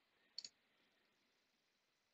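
Near silence with one faint computer mouse click, a quick double tick, about half a second in.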